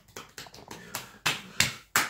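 Massage hands patting and slapping a bare back in quick percussive strokes: a run of fast light taps, then a few louder, sharper slaps in the second second.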